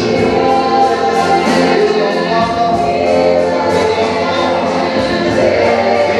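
Gospel worship song sung by a group of voices through microphones, with instrumental accompaniment and a steady beat.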